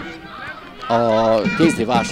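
Narrator's voice: a quiet first second, then a drawn-out, steady hesitation sound about a second in, with speech starting near the end.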